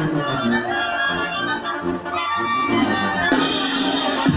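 Live wind band playing a festive tune, with several horns and reed instruments carrying the melody together; a brighter, noisier layer joins near the end.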